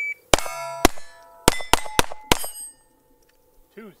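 The end of a shot-timer start beep, then a KelTec CP33 .22 LR pistol fired about six times in about two seconds, each hit ringing off steel plates.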